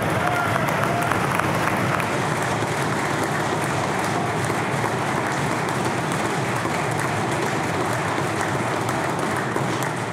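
A chamber full of members applauding: dense, steady clapping with a voice or two calling out in the first couple of seconds. It eases off near the end.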